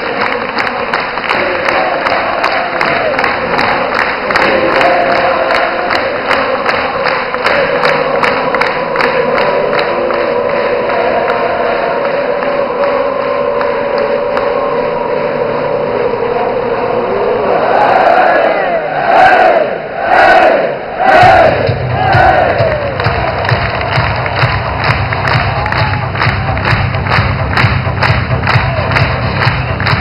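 Football stadium crowd singing and clapping in rhythm, about two claps a second. About two-thirds of the way in come a few loud crowd shouts, then music with a steady bass from the stadium loudspeakers joins under the clapping.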